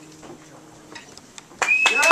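The last acoustic guitar chord fades out. About a second and a half in, the audience suddenly breaks into clapping and whistling.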